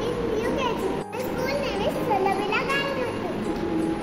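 A young girl speaking to the camera in a child's voice.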